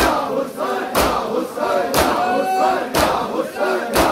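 A crowd of men chanting a Muharram nauha lament together, with their palms striking their bare chests in unison about once a second (matam).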